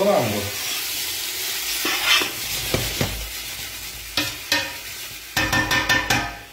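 Sausage sizzling as it browns in a stainless steel pot while a utensil stirs and scrapes it, with sharp knocks against the pot scattered through and several in quick succession near the end.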